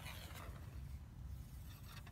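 Faint, steady riverside background noise with a low rumble; no distinct splash from the cast float stands out.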